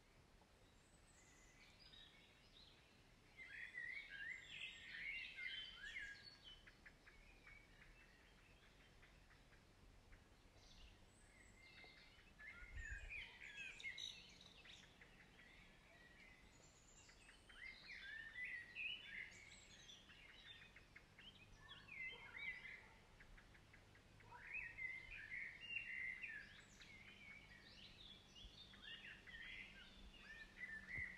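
Faint songbirds chirping and twittering in bouts of a few seconds, with quieter gaps between.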